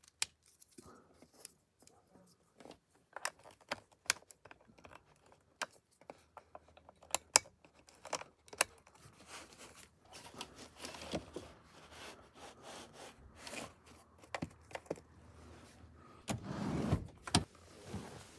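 Sharp clicks and rattles of power connectors and cables being handled and plugged together, irregular and scattered. A longer rustling shuffle near the end.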